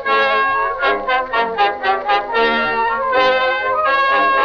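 Early acoustic Edison cylinder recording of a small brass-led studio orchestra playing a brisk instrumental introduction. The sound is thin, with no top end.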